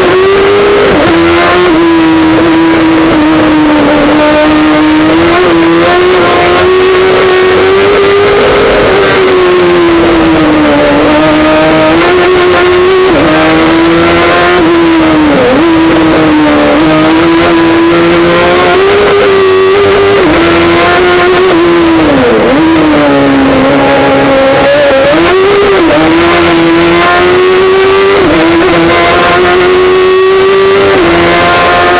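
Race car engine at high revs, heard from inside the stripped cabin on a hillclimb run. The note climbs and falls again and again with throttle and gear changes, with sharp dips about 15 and 22 seconds in.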